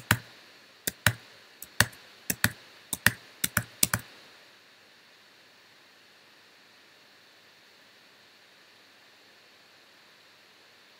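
A quick, irregular run of about a dozen sharp clicks of computer keys, stopping about four seconds in, leaving only a faint steady hiss.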